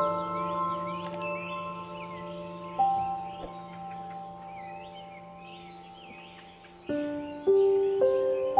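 Soft background music of chime-like mallet notes that ring on and fade, with a new group of notes struck about seven seconds in. Bird chirps run through it.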